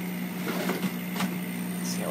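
Full Spectrum 40-watt laser cutter running a vector cut: a steady machine hum with a few faint clicks as the head moves.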